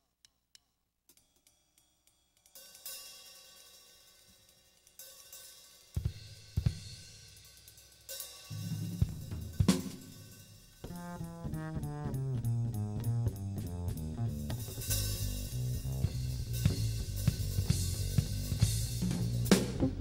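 A live jazz band's drum kit and bass opening a tune: a few soft clicks, then cymbal and hi-hat swells from about two and a half seconds in and heavy drum hits near six seconds. A low bass line enters around eight seconds and starts moving about eleven seconds in, settling into a steady groove with the drums.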